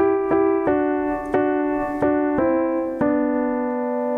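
Piano played slowly with the right hand: a phrase of about seven notes picking out a harmony line, the last note held for about a second.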